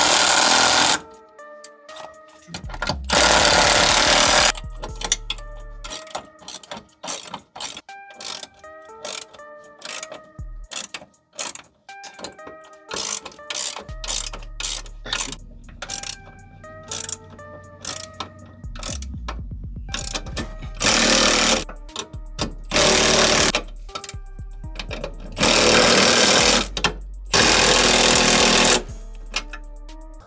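Background music with a beat, broken six times by loud runs of a cordless ratchet of about a second each as it drives the bracket bolts: once at the start, once about three seconds in, and four times close together in the last ten seconds.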